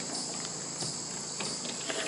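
Steady, high-pitched chorus of insects, with a few faint soft taps.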